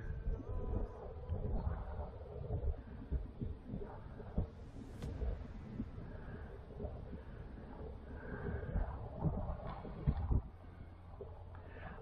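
Wind buffeting the microphone in low, irregular rumbles and thumps, with faint breathing.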